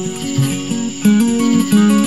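Acoustic guitar being strummed, its chords ringing, with a louder strum about halfway through.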